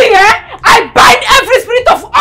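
A person's voice shouting loudly in excited, rapid bursts.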